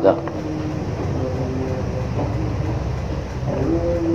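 A steady low rumble of background noise with no clear events, faint traces of a man's voice near the start and end.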